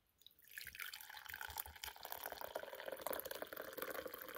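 A drink poured in a steady stream into a ceramic mug, starting about half a second in.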